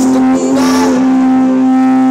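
Live rock band music: a single long note held at a steady pitch.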